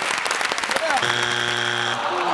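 Studio audience clapping and calling out, then about a second in a game-show strike buzzer gives one steady low buzz lasting about a second, the signal of a wrong answer that is not on the board.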